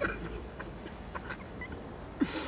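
A man quietly sobbing in short, broken breaths.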